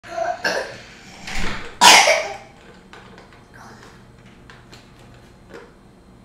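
Short vocal sounds from a person: one brief voiced note, then three loud breathy bursts in the first two seconds. After that come light, scattered clicks of plastic toys handled on a wooden floor.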